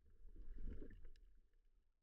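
Faint, muffled underwater water noise picked up through an action camera's waterproof housing. It swells briefly, then fades away.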